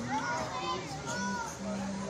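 Indistinct chatter of several voices, including high children's voices.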